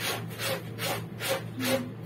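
Laundry scrubbed by hand in a plastic basin, fabric rubbed against fabric in regular strokes, about two or three a second.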